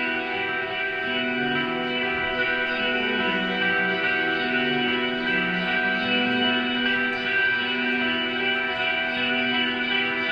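A rock band and an orchestra playing together, with guitar prominent: sustained chords over a slow-moving lower line, without drum hits, in a reverberant hall.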